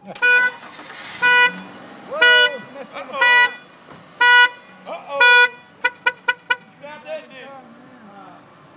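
Car horn honking: six short honks about a second apart, then four quick taps in a row.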